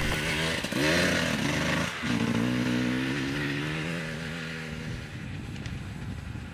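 Enduro motorcycle engine revving up, with a short break about two seconds in. It then runs on steadily, slowly fading as it moves away.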